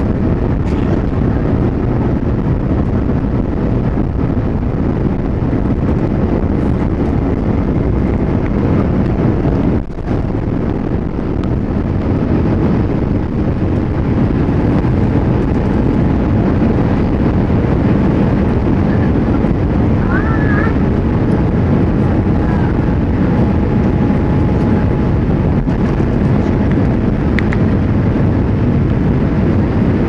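Cabin noise of a Boeing 787-8 taking off, heard from inside: the engines at takeoff power and the air rushing past make a loud, steady rumble through the takeoff roll and the climb after liftoff.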